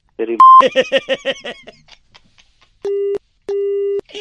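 A man's laughter with a short, sharp beep early on. Then, near the end, a telephone busy tone: two steady low tones with a short gap between them, the sign that the call has been cut off.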